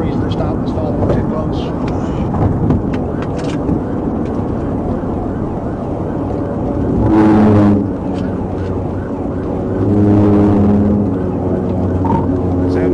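Cabin noise of a state patrol cruiser in a high-speed pursuit: a steady rush of road and wind noise. There are two loud, steady-pitched horn-like blasts, a short one about seven seconds in and a longer one about ten seconds in, as the cruiser closes on tractor-trailers.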